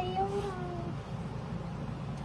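A young child's high, drawn-out vocal call, about a second long, gliding down in pitch and trailing off about a second in.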